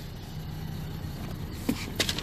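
Steady low hum of an idling car engine, with a faint click near the end.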